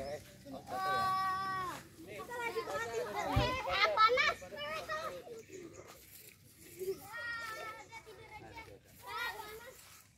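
Children's voices shouting and calling out while playing, with one long, steady, high call about a second in and a busier burst of overlapping voices around the middle. A brief low thump comes about three and a half seconds in.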